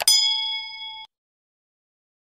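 A mouse-click sound effect, then a bright bell ding: the notification-bell chime of a subscribe-button animation. It rings for about a second and cuts off suddenly.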